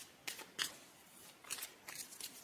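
A few faint, short clicks and crackles at irregular moments, in a quiet room.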